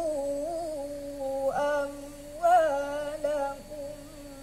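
A boy's voice in melodic Quran recitation (tilawah), holding long, ornamented notes that waver and rise in pitch, in two phrases with a short breath between them, fading near the end.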